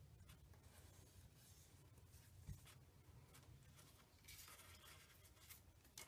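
Faint rustling and light ticks of paper and cardstock being handled and pressed down on a table, with a soft knock about two and a half seconds in and a longer stretch of rustling near the end.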